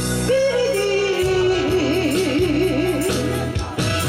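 Stage music over a PA: a held melody line with a wide, even vibrato over a steady backing track, an intro or interlude of a pop song.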